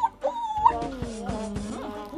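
A whiny vocal sound that rises in pitch, then slides down, over background music.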